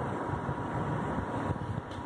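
Steady background room noise with a faint, even high tone running through it, and a light tap about one and a half seconds in.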